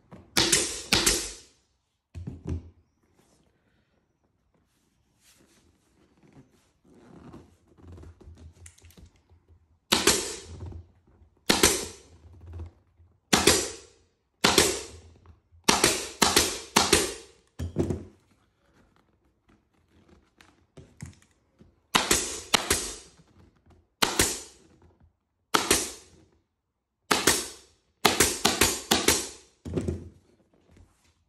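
Air-powered upholstery staple gun firing staples into a motorcycle seat base: about twenty sharp shots, each dying away within half a second, fired in uneven runs with pauses of a few seconds between.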